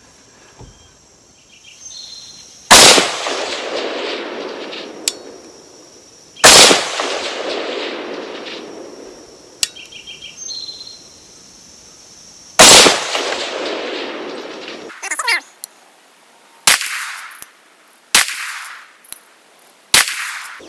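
A 6.5 Grendel AR-15 rifle fired slowly, three loud shots about 3, 6.5 and 12.5 seconds in and another at the very end, each followed by a long rolling echo that fades over several seconds. Lighter sharp clicks come between the shots.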